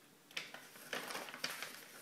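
A folded sheet of paper being handled and pulled open by hand: soft rustling with a few short, sharper crinkles, about a third of a second in, at about a second and near a second and a half.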